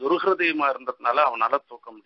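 Speech only: a man talking, his phrases growing short and broken in the last half second.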